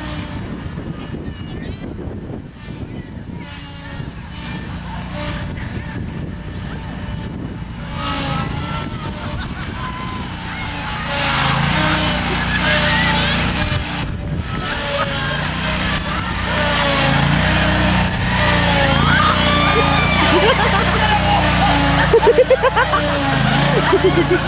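Lawnmower engine running steadily, louder from about halfway through, with people's voices and laughter over it.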